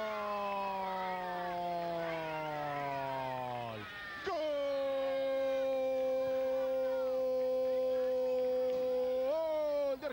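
A football TV commentator's long, drawn-out goal cry, 'Gooool', celebrating a goal. The first held note slowly falls in pitch, breaks for a breath about four seconds in, and a second note is held level for about five seconds, lifting briefly near the end.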